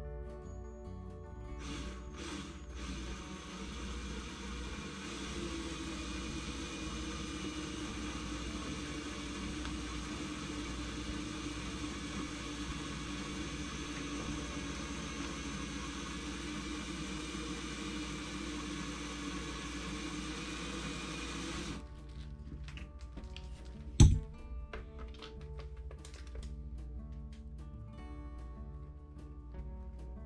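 Cordless drill running steadily as it bores into a motorcycle fairing, then stopping after about twenty seconds. A couple of seconds later comes a single sharp knock, the loudest sound. Background music plays underneath.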